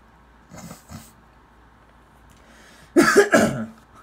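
A man coughing, a short cluster of several coughs about three seconds in. Before it there is a quiet pause with two faint short sounds.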